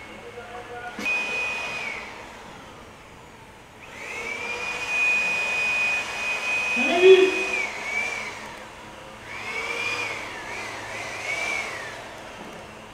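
Rushing, wind-like whoosh that comes in three swells. Each swell carries a high, held whistling tone that bends up and down near its ends. About seven seconds in, a short rising lower sound is the loudest moment.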